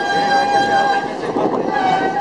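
Brass band music with long held notes that change about a second and a half in, over the murmur of a walking crowd.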